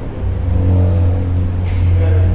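A loud, steady low hum that swells about half a second in, with a brief hiss near the end.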